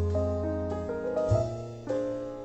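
Slow piano music: chords struck and left to fade, with a new chord about a second and a half in.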